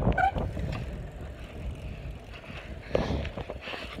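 Low wind rumble on a phone microphone carried on a moving bicycle, fading after the first second or two, with one short faint noise about three seconds in.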